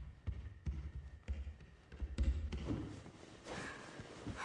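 A series of dull, low thuds, about two a second, dying away after about two and a half seconds.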